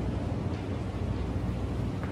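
Steady low hum and rumble of room background noise, with no ball strikes or cue hits.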